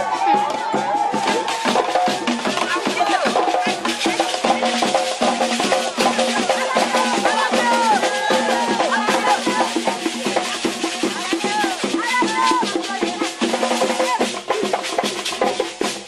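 Group singing and calling by a crowd of women over dense, steady hand percussion of drums and rattles, Sande society masquerade music.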